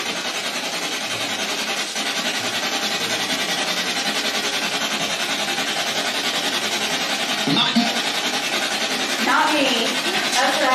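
Spirit box sweeping through radio stations: a steady hiss of static chopped in a fast, even pulse, with a brief snatch of voice near the end.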